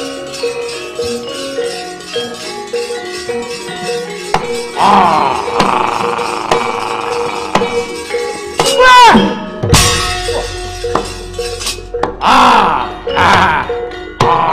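Javanese gamelan playing a steady, rhythmic melody of metallic tones. About five seconds in, a loud voice breaks in with long cries that swoop down in pitch, voicing a shadow puppet, broken by sharp metallic clashes.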